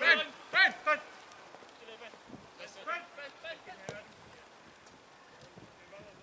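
Footballers shouting to each other across the pitch: a few loud calls in the first second, fainter shouts about three seconds in, then only faint background.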